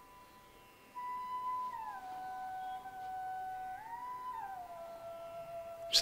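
Soft background music: one sustained, pure-sounding electronic tone that glides down in pitch about two seconds in, rises briefly near four seconds, then settles lower again.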